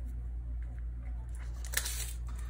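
Faint crinkling of a foil hockey card pack being handled, a few light crackles near the end, over a steady low hum.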